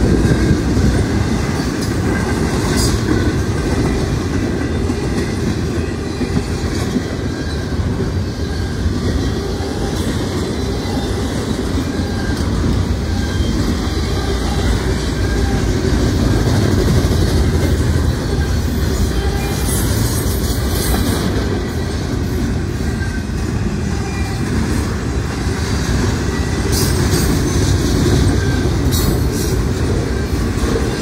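Double-stack container well cars of a Norfolk Southern intermodal freight train rolling past: a steady, loud rumble with the clickety-clack of wheels over the rail joints, and a few short high-pitched wheel squeals.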